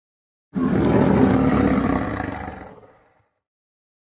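A lion's roar as a sound effect: a single roar that starts suddenly about half a second in and fades away by about three seconds.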